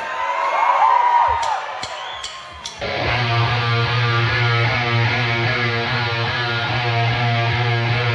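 Electric guitar starting a repeating riff about three seconds in, over a steady low note, with no drums yet: the unaccompanied opening riff of a rock song.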